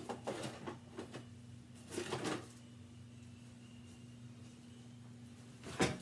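A few brief handling noises, rustles and knocks, as a painting spatula is picked up, the sharpest knock near the end, over a faint steady low hum.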